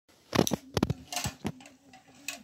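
Small hard plastic toy blocks clicking and knocking together in a child's hands: a handful of sharp clicks, some in quick pairs.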